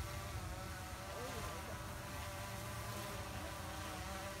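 A quadcopter drone's propellers giving a steady, faint hum as it hovers, pulling on a line to tow a second drone out of a tree.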